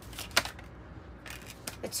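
Tarot card handling: a card is drawn from the deck and laid down. There is one sharp snap about a third of a second in, then a few fainter ticks.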